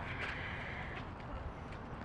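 Low steady outdoor background noise with no distinct event, a faint higher hiss in about the first second.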